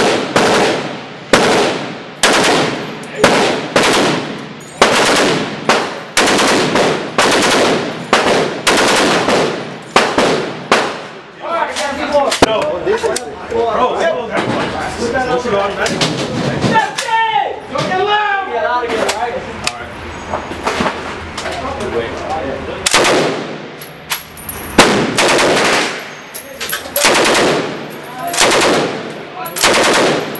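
Fully automatic WWII-era machine guns fired in short bursts, about one a second, each with a hard echo off the range's metal walls. A belt-fed Browning M1919 .30-06 is firing at first and a Bren .303 light machine gun near the end, with a break in the firing in the middle.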